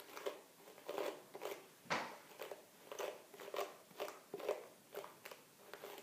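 Bristle hairbrush drawn through a child's curly hair in quick repeated strokes, each a short crackling rasp, roughly two a second.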